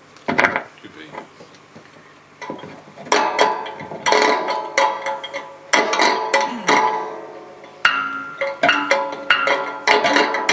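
Improvised object music: small objects on a tabletop, amplified, struck and rattled. It starts with one sharp knock, then from about two and a half seconds in comes a run of clattering strikes that leave ringing pitched tones.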